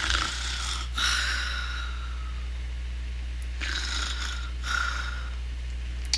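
A person making mock snoring sounds: two slow, breathy snores, each a drawn-in breath followed by a breath out, with a pause between them.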